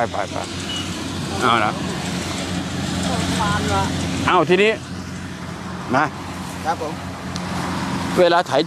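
Engine of a rice combine harvester running steadily, a low even hum, with a few short bursts of voices over it.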